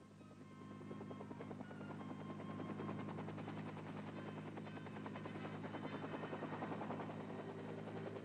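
Helicopter hovering and lifting a sling-suspended jeep: a fast, even rotor chop over a steady engine drone, growing louder over the first few seconds, with music underneath.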